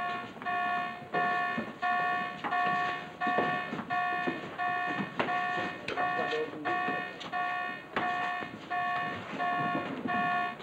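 An electric alarm buzzer sounding in short repeated beeps, about two a second, with faint clicks and clatter underneath.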